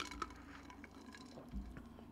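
Faint sips and swallows from a mug, with small wet clicks and a soft low thump about one and a half seconds in.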